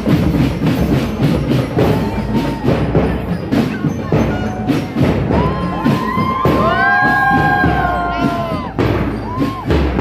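Marching drum band playing: steady drum strokes, with horns holding a long chord from about five and a half seconds to nearly nine seconds.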